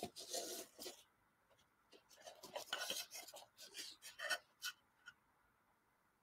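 Faint, short rubbing and rustling of a white ribbon being slid and adjusted around a small faux book stack by hand, in scattered scrapes within the first second and again from about two to five seconds in.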